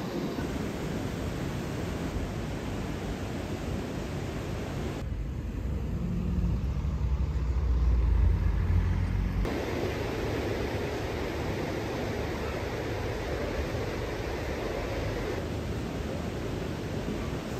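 Steady rush of river water pouring over a weir. About five seconds in, this gives way to a low rumble that swells and then cuts off suddenly, followed by steady outdoor background noise.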